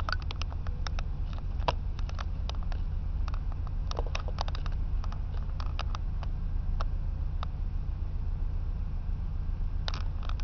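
A steady low rumble heard from inside a car, with scattered light clicks and ticks at irregular intervals.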